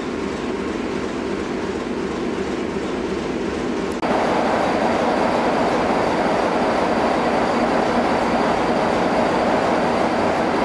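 BR Class 33 diesel locomotive's Sulzer eight-cylinder engine idling, quieter at first, then louder and closer from about four seconds in, with a steady high whine over the engine.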